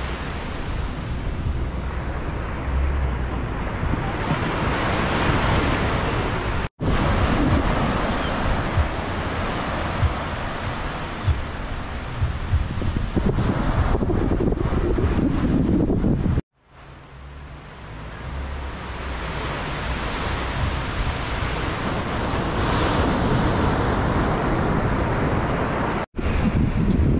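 Small waves breaking and washing up a sandy beach, with wind buffeting the microphone. The sound cuts out abruptly twice, about a third and two thirds of the way through, and fades back in after the second cut.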